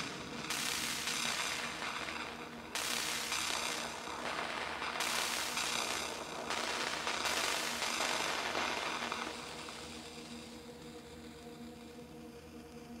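Modular synthesizer playing a low steady drone under washes of hissing noise that swell in about every two seconds, the noise dying away over the last few seconds.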